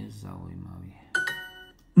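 A learner's voice trails off, then about a second in a language-learning app's correct-answer chime sounds: a short, bright ding that rings for about half a second.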